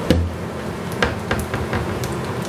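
Handling noise: a dull thump just after the start, then a few light taps and clicks as a bottle is picked up from the kitchen counter.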